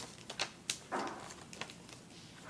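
Sheet of paper being refolded by hand: a few sharp crinkles and crackles, with a short rustle about a second in.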